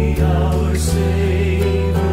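Recorded worship hymn playing: a sung line held over sustained accompaniment with a steady bass.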